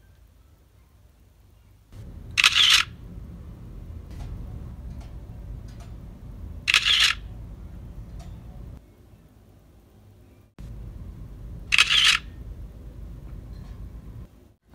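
Camera shutter sounds as photos are taken, three clicks spaced about five seconds apart. A low steady hum runs underneath.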